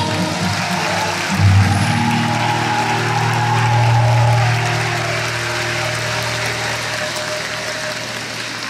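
Backing band sustaining and letting ring the closing chord of the song, fading out, while the audience applauds.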